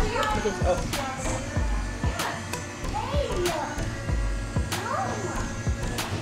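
Background music with a steady beat, with brief snatches of speech over it.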